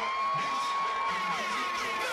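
Live hip-hop concert sound: one high note held steady for about two seconds over a cheering, whooping crowd, with short falling whoops through it.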